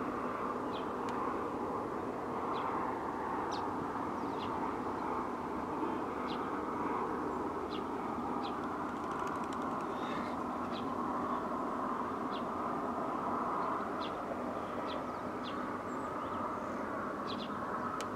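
Birds chirping now and then with short, high chirps over a steady, even background noise.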